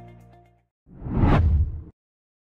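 Soft background music fading out, then after a brief gap a whoosh sound effect that swells for about a second and cuts off abruptly, an end-card logo sting.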